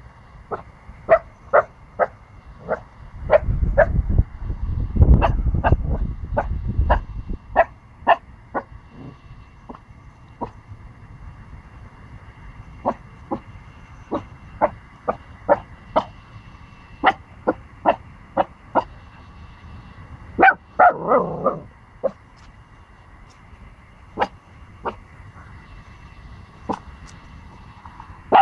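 A 14-week-old pomsky puppy barking repeatedly in short, sharp yaps, about two a second, in runs broken by pauses, with a quick flurry about three quarters of the way through. A low rumble on the microphone sits under the barks for a few seconds near the start.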